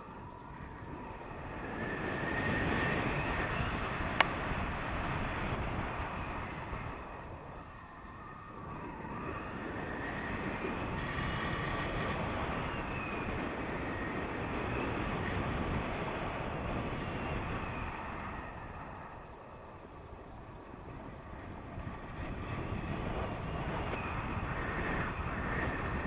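Wind from a paraglider's flight rushing over an action camera's microphone, swelling and easing in slow waves, with one sharp click about four seconds in.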